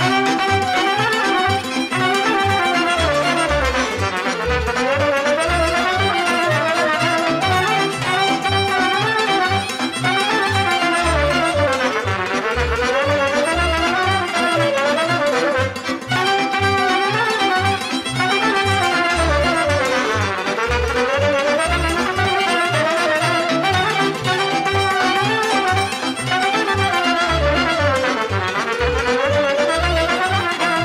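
Romanian folk song (muzică populară) instrumental introduction: a band playing a winding melody that rises and falls over a steady, pulsing bass beat, starting suddenly at the outset.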